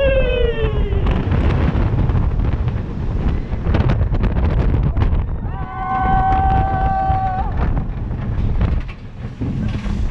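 Wind buffeting the microphone over the rumble of a roller coaster train at speed. A rider's yell slides down in pitch at the start, and a long, steady held scream comes about six seconds in.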